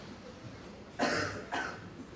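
A man coughing: one sharp cough about a second in, followed by a shorter, weaker one.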